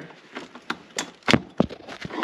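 Several sharp clicks and knocks as a plastic push-rivet removal tool is worked under a plastic push rivet holding a Jeep's underbody splash shield, prying it loose.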